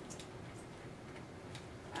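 A few faint, scattered keystroke clicks from a computer keyboard as the text is typed, over quiet room noise.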